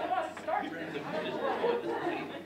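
Indistinct chatter and murmured voices in a large hall, no words clear.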